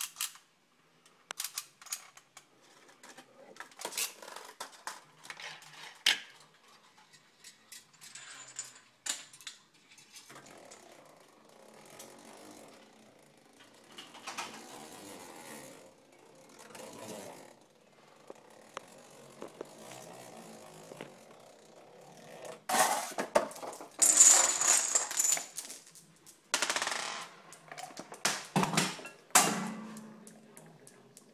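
Marbles clicking and rattling as they drop and roll down a homemade chain-reaction machine of plastic bottles, a funnel and a vacuum-hose spiral, with long stretches of rolling. A louder run of clattering impacts comes about three-quarters of the way through.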